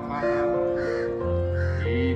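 Background music with held notes, and a crow cawing three times over it.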